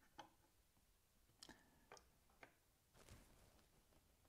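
Near silence with a few faint ticks over the first two and a half seconds and a soft rustle near the end: an Allen key turning the small adjustment screws in the miter gauge bar, tightened a fraction to take the play out of the bar.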